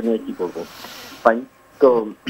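Speech from a telephone caller, the voice thin and cut off in the highs as over a phone line, with a soft breathy hiss in a pause about half a second in.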